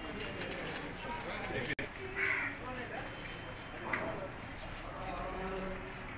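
Ambient sound: a murmur of voices with occasional bird calls, and a brief dropout in the sound just before two seconds in.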